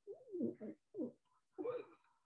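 A dove cooing faintly: a longer note that rises and falls in pitch, then two shorter low notes.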